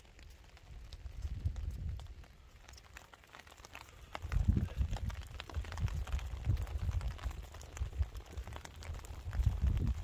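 Wood fire crackling in a metal fire pit with scattered small pops, then rain pattering on an umbrella overhead. A low, uneven rumble on the microphone grows louder from about four seconds in.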